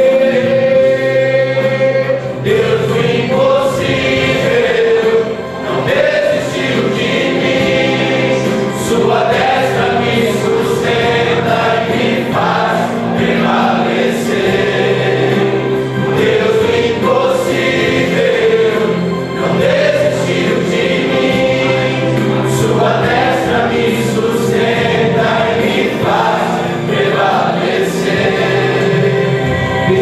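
A group of men singing a gospel hymn together, the lead voice amplified through a hand-held microphone.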